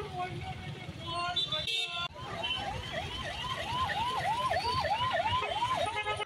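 An electronic siren sounds in quick repeated rising sweeps, about three a second, starting about two seconds in, over faint voices.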